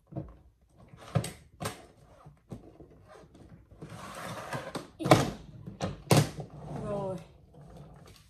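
Pink hard-shell suitcase being closed and handled: scattered knocks and clicks, a rasp of about a second near the middle as it is zipped shut, then two louder knocks as it is stood upright.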